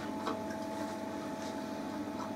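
Steady hum of reef-tank equipment running, holding a few constant tones, with a few faint light ticks.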